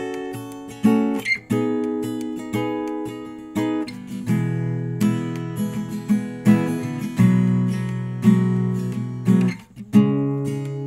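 Acoustic guitar strummed as a rhythm part, sharp chord strokes with the chords ringing between them, moving to a new chord every few seconds.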